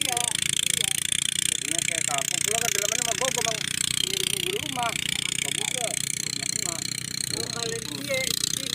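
People talking casually over a steady background of engine noise and hiss from machinery running in the field.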